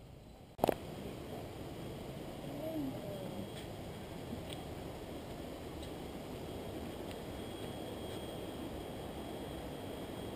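A sharp click about half a second in, then steady low rumbling noise of wind on an action camera's microphone, with a brief gliding sound about three seconds in.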